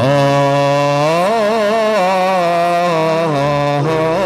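A voice singing an ornamented melody with wavering, sliding pitch, over a sustained keyboard chord; the singing comes in suddenly right at the start.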